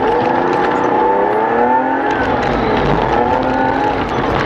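Race car engine heard from inside the cabin, revving: its pitch climbs over the first two seconds, drops, then climbs again near the end.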